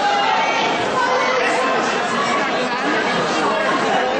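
Many voices talking at once in a large hall: a steady babble of chatter from the people around the competition mats, with no single voice standing out.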